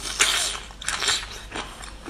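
Crunchy bites and chews of a fibrous bamboo shoot. The loudest crunch comes just after the start, with further crunches about a second in and again shortly after.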